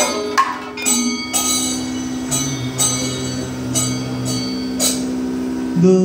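Kathakali accompaniment: a chengila gong and ilathalam hand cymbals strike a steady beat of ringing metallic hits over a sustained drone.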